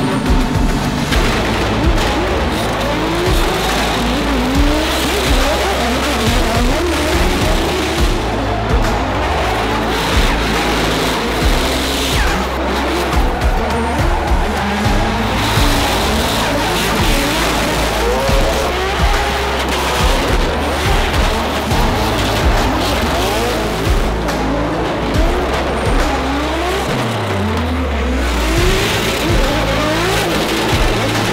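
Drift cars' engines revving up and down again and again with tyre squeal, mixed over background music with a steady bass line; a falling bass sweep comes near the end.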